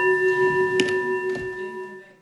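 The presiding officer's desk bell in a parliament chamber rings with a steady ring of several tones, then fades out near the end. There is a small click about a second in.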